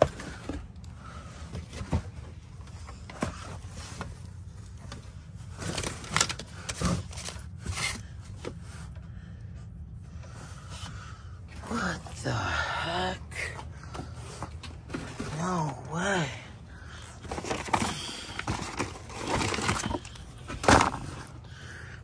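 Cardboard boxes and stored clutter being shifted and rummaged through: scattered knocks, thumps and scrapes over a steady low hum. A man's untranscribed mutters and exclamations come through several times in the second half.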